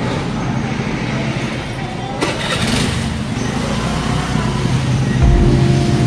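Steady noise of car and motorbike engines running close by, with a sharp click a little over two seconds in and a heavier low rumble near the end.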